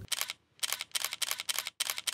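Camera shutter clicking in a rapid burst, roughly ten clicks a second, like an SLR firing in continuous mode, with a brief break a little under half a second in.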